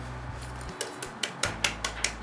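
Round aluminium cake pan being shaken and tapped to spread a dusting of flour over its oiled sides: a run of quick, light metallic taps starting about halfway through.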